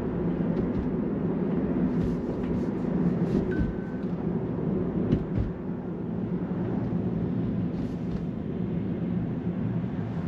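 Steady road and tyre rumble inside the cabin of a Tesla electric car driving on a road, with a brief high beep about three and a half seconds in and a couple of light thumps around five seconds in.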